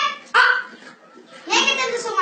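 A boy's voice speaking lines of a dialogue in short, loud bursts, with brief pauses between them.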